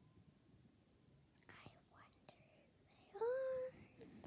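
A girl's voice: faint whispering about halfway through, then a short, louder pitched voice sound near the end, held for about half a second, rising slightly before levelling off.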